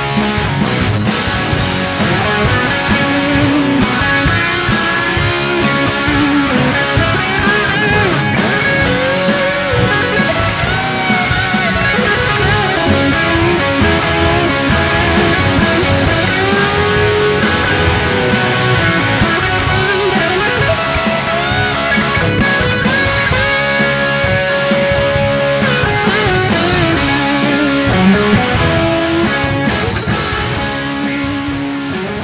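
Instrumental section of a rock song: a lead electric guitar plays bending, gliding notes over a steady band with drums.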